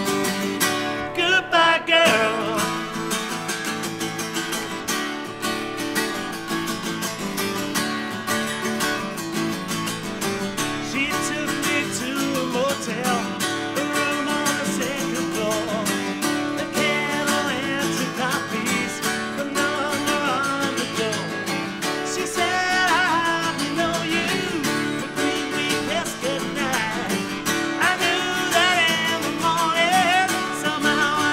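Two acoustic guitars strummed together in a steady rhythm, with a man singing the melody in stretches over them.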